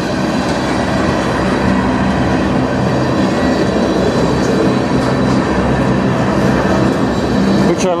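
Freight train tank cars rolling past close by: a steady, loud noise of steel wheels running on the rails.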